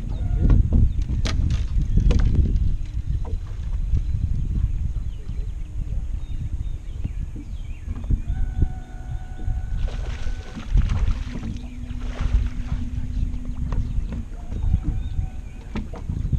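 Low rumbling wind noise buffeting the boat-mounted camera's microphone, with a few sharp knocks in the first couple of seconds and a steady low hum from about halfway to near the end.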